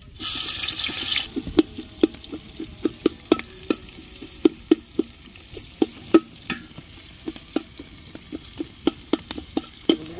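Sliced onions dropped into hot oil in an aluminium pot, with a short burst of sizzling at the start. A metal spatula then stirs them, clicking and scraping against the pot about two to three times a second over a low frying sizzle.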